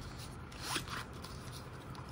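Fabric rasping as a small battery pack is slid out of a helmet's rear counterweight pouch. It is faint, with one brief swell a little under a second in.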